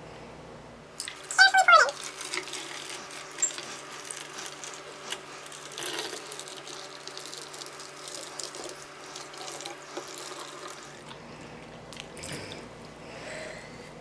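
Water pouring from a filter pitcher into a plastic soda bottle: a steady splashing trickle that starts about a second in and stops a few seconds before the end. Near the start there is a brief louder sound that falls in pitch.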